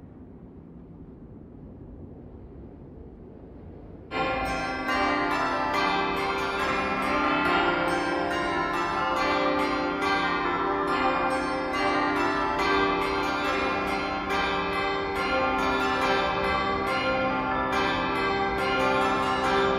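A faint low background hum, then about four seconds in a peal of many bells starts suddenly and keeps ringing, strike after strike in quick succession.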